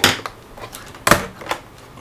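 Plastic memory-compartment cover on the underside of a Toshiba Satellite A300 laptop being unclipped and lifted off its captive screw. Two sharp clicks about a second apart, with a few fainter taps.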